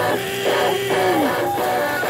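Live rock band playing: electric guitars strumming over drums, with a long held note that slides down in pitch just over a second in.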